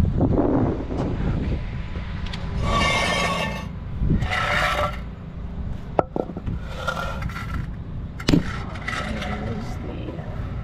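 Wooden 2x4 boards being slid and set down on concrete pavement: several rough scrapes and two sharp knocks of wood on concrete. A low steady rumble runs underneath.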